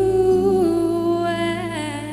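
A young woman's solo singing voice through a microphone, holding long sustained notes with light vibrato that step down and back up a little in pitch, over a low, steady backing-track accompaniment.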